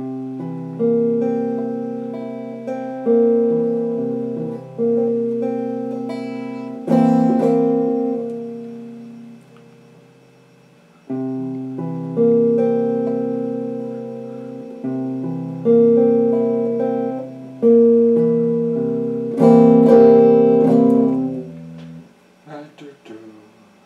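Strat-style electric guitar in a clean tone, chords struck one at a time and left to ring out and fade. The chords come in two slow phrases with a short gap in between, and a quicker cluster of strikes near the end.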